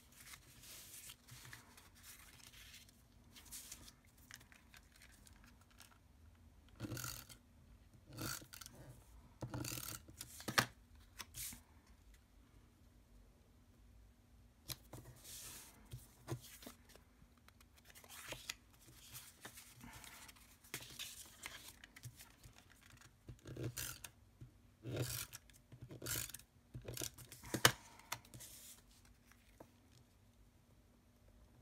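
Paper and cardstock pieces being handled, slid and pressed down by hand on a craft mat: scattered rustles and light taps, with a sharper click about ten seconds in and another near the end.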